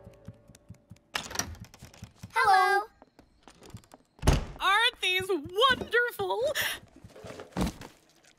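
Short wordless voice sounds from cartoon characters, with a few sharp thuds between them, the loudest a low thud about four seconds in.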